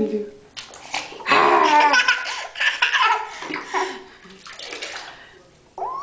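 Laughter over water splashing in a bathtub, loudest in the first half, then a few shorter laughs.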